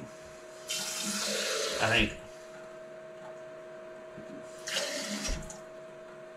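Kitchen sink faucet running for about a second into a glass mason jar, filling it with water, then a second, shorter rush of water a few seconds later.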